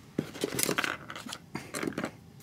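Close handling sounds of a folded card-stock booklet and a sewing needle: a run of small clicks and papery rustles as fingers take hold of the card and pick up the needle.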